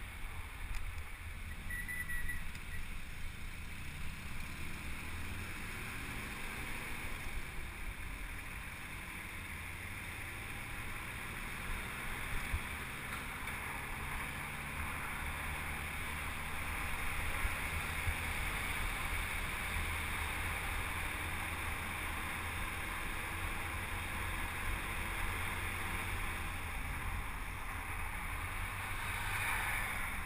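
Steady wind and road noise over a bicycle-mounted action camera's microphone while riding in traffic, with a vehicle engine humming faintly underneath.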